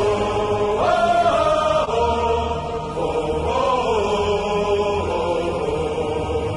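Football supporters' chant: many voices singing together in unison, holding long notes of about a second each in a slow melody that steps up and down.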